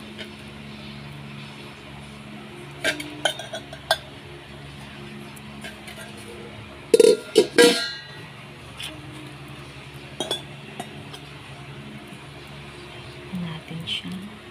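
Stainless steel blender bowl handled and set down on a hard surface: scattered metallic knocks and clinks, the loudest cluster about seven seconds in, over a steady low background hum.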